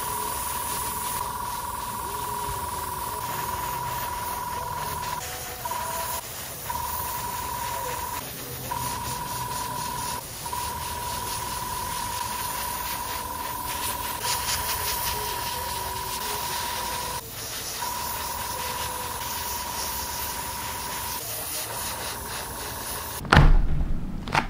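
Gravity-feed airbrush spraying clear coat: a steady hiss of air with a thin steady whistle, broken by short pauses several times. A loud knock near the end.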